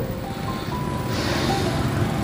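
Steady rumble of motorbike and car traffic at a busy city intersection, with a few short held musical tones over it.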